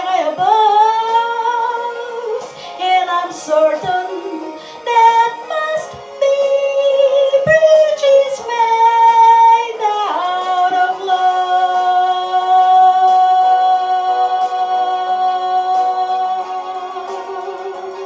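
A woman singing solo, a ballad line with bending, ornamented runs, then one long note held from about ten seconds in that slowly fades away near the end.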